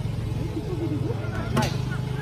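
Voices over a steady low vehicle engine hum, with one sharp bang about one and a half seconds in.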